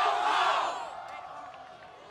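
A crowd yelling and cheering in a loud burst during the first second, fading to a lower murmur of voices.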